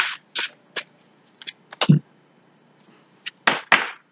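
Tarot cards being shuffled and handled: about ten short, sharp snaps and taps at irregular intervals as the cards are shuffled and one is drawn.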